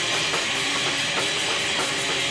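A live rock band plays with electric guitars and bass over a drum kit, with a steady, fast beat of cymbal strokes.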